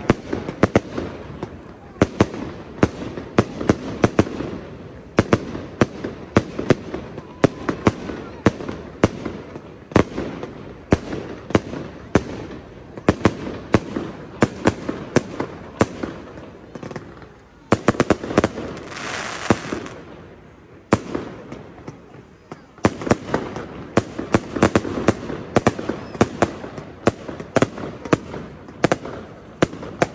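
Fireworks going off overhead: a rapid, irregular run of sharp bangs and cracks, several a second, pausing briefly twice past the middle. A few seconds of hissing rise up among them a little after the middle.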